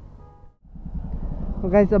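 Low vehicle engine rumble on the road, cut off briefly by a dropout about half a second in, then building louder; a man starts speaking near the end.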